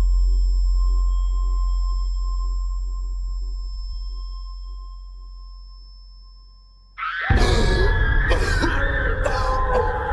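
A droning film-score pad with steady ringing, bowl-like tones fades down over about seven seconds. Then a loud, harsh burst of sound cuts in suddenly, with a hurt man gasping and crying out in pain.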